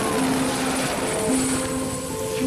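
Helicopter noise, a steady rushing that thins out near the end, with sustained music notes underneath.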